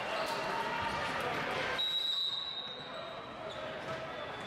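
Referee's whistle sounding one steady, high note for under two seconds, starting about two seconds in, the usual signal for the server to serve. Around it are voices and a ball bouncing in a big, echoing gymnasium.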